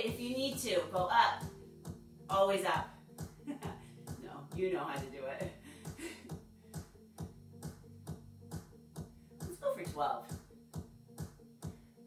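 Background workout music with a steady, fast beat, with a voice heard briefly a few times over it.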